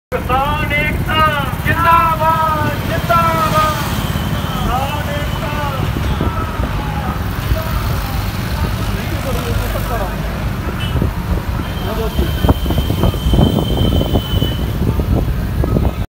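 Steady engine and road rumble from a vehicle moving through town traffic. A voice calls out for the first few seconds, and a thin, steady high tone sounds for about two seconds near the end.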